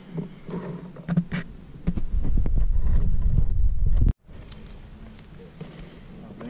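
A few light crackles, then a loud low rumble on the camera's microphone from about two seconds in, the kind made by wind or handling. It cuts off abruptly a little after four seconds.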